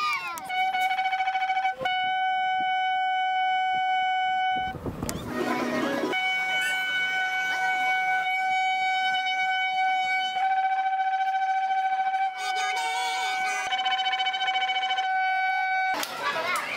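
Long shofar blown in long sustained blasts: one steady, slightly harsh tone held for several seconds at a time, with brief breaks between notes. A short burst of noise about five seconds in interrupts it.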